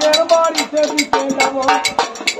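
Folk song accompaniment playing between sung lines: a gliding melody over quick, sharp metallic percussion strikes, about four a second.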